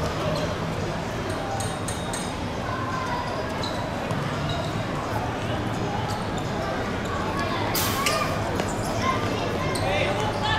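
Sounds of a football game on an outdoor hard court: the ball being kicked and bouncing on the hard surface, with scattered calls and shouts from the players and a steady low rumble of background noise. One sharp, loud smack stands out about 8 seconds in.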